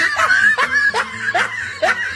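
A person laughing in a quick run of short bursts, about three a second.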